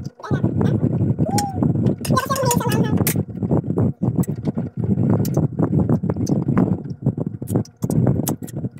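Close-up crunching and chewing of raw green mango slices, a dense run of short crisp crunches, with brief wavering vocal sounds about a second in and again around two to three seconds.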